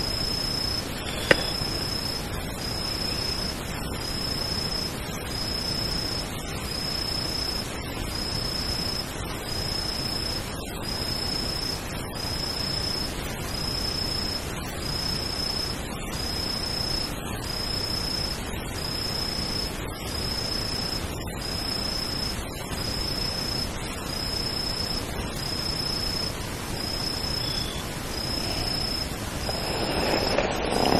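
An insect calling at night: a high, steady-pitched call under a second long, repeated evenly a little more often than once a second, over a steady hiss. A single sharp click about a second in is the loudest sound.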